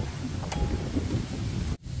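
Wind buffeting the microphone, with a single brief click about half a second in; the sound drops out abruptly near the end.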